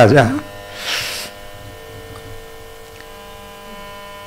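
Steady electrical mains hum, with a short hiss about a second in.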